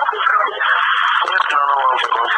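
A recorded phone conversation played back through a small speaker: speech talking steadily, thin and tinny, with no deep or high tones.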